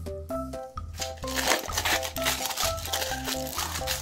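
Aluminium foil crinkling as it is peeled open by hand, starting about a second in, over background music with a bouncy melody.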